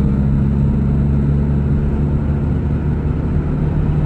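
Car engine and road noise heard inside the cabin while driving, a steady low drone whose engine note drops slightly about half a second in.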